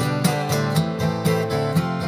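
Acoustic guitar strummed in a steady rhythm, about two strong strums a second over ringing chords, with no singing.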